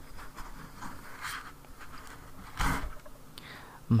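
A metal microphone boom arm being slid and lifted out of its foam packing insert: faint scraping and rustling of metal against foam, with a brief louder scrape about two-thirds of the way through.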